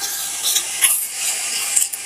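Wax crayon scratching across paper in short repeated strokes as a drawing is coloured in, played from a phone's speaker as a coloring ASMR clip.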